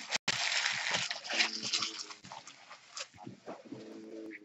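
Rustling and handling noise, loud for about the first two seconds and then dying down to softer, scattered rustles.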